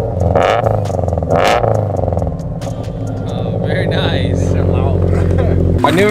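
Subaru BRZ's flat-four engine heard at the exhaust tips, blipped twice in the first two seconds and then idling steadily.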